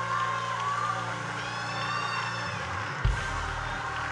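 Church backing music under a pause in the preaching: sustained low chords with the bass note changing, and a soft low hit about three seconds in. A faint drawn-out voice from the congregation rises and falls around the middle.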